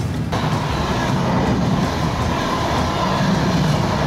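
Passenger train rolling past close by: a steady rumble of wheels on rails that cuts off suddenly at the end.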